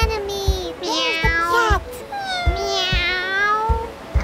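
Cat meowing: several long calls in a row, over background music with a steady thumping beat.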